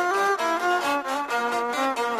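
Traditional Greek folk dance music: an instrumental melody of quick, short notes that rise and fall, with no singing.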